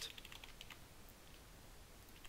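Faint computer keyboard typing: a quick run of keystrokes in the first second or so, then near quiet.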